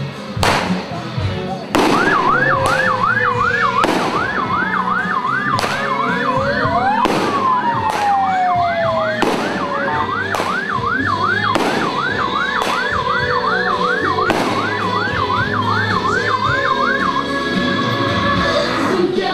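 An electronic yelp siren warbling rapidly, about three to four sweeps a second, from about two seconds in until near the end, with a slower rising and falling whoop in the middle. Loud sharp cracks come every second or two over it.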